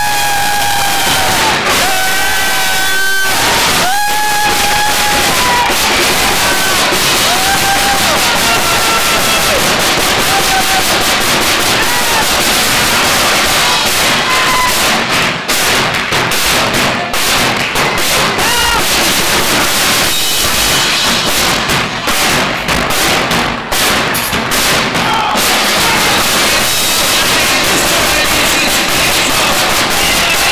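Loud crowd of guests cheering, whooping and yelling over a live drum group playing bass drum and snares. The yells stand out at the start, and sharp drum hits stand out through the middle.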